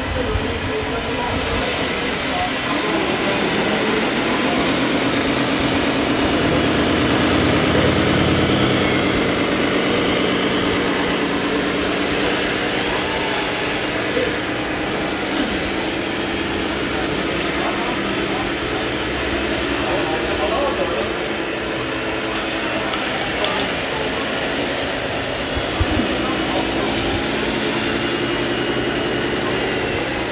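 Radio-controlled model wheel loader working, its drive and hydraulic motors humming steadily; the hum swells in the first half and again near the end, over the steady chatter of a crowd.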